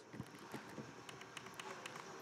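Faint, light taps and handling noise from the plastic lid of a Kitchen HQ vacuum sealer being pressed down onto a bag. There are a few small ticks but no firm latching click: the lid has not fully closed.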